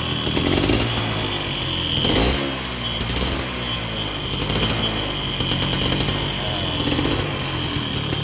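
Yamaha 110 SS's single-cylinder two-stroke engine running, its note broken by short crackling bursts every second or so; the owner says its timing is set low.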